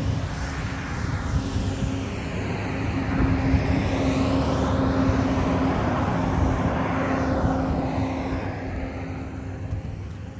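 Highway traffic passing, with a heavy truck going by: a steady engine hum over tyre and road noise that swells and dies away near the end.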